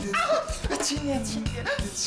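A man whimpering in distress, his voice sliding up and down in a whining cry, over background music.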